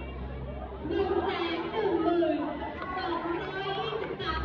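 Speech: a voice talking in short phrases over a low steady hum.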